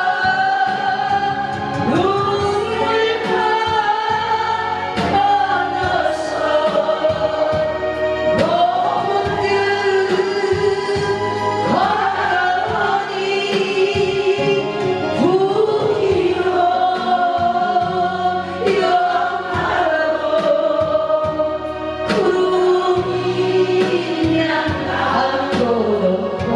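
A woman singing a Korean trot song into a microphone, amplified through a PA speaker, over musical accompaniment. Her long held notes scoop up into pitch.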